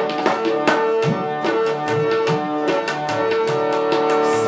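Harmonium playing a melody in long held notes over a steady tabla rhythm of sharp, ringing strokes, with no voice.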